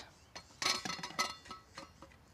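Metal saucepan and lid clinking and knocking as the pot is handled: a small knock, then a cluster of clinks with a brief metallic ring about half a second in, and another knock near the end.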